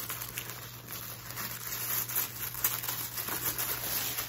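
Paper packaging crinkling and rustling in a run of small irregular clicks as hands open and reach into a packed subscription box.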